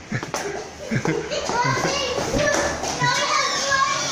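Several young children shouting and squealing excitedly, voices overlapping, growing louder from about a second in.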